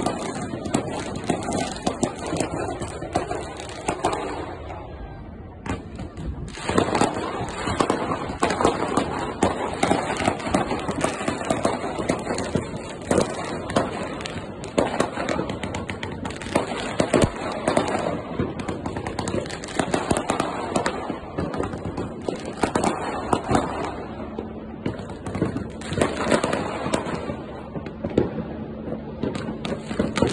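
Many fireworks going off together: a dense, irregular run of bangs and crackles, with a brief lull about five seconds in.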